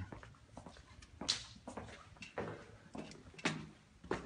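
Footsteps climbing concrete stairs: a string of irregular soft thuds and scuffs at walking pace, in a large empty concrete building.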